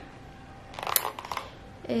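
Brief crackle of plastic clicks and rustling, about a second in and lasting under a second, as a handheld Philips Walita steam iron is moved and lowered.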